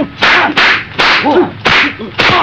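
Dubbed kung fu film fight sound effects: a quick run of sharp, whip-like swishes of fast arm strikes and blocks, about four in two seconds.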